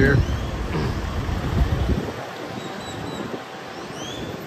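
Wind rumbling on the microphone over a faint outdoor background, heaviest for the first two seconds and then easing off.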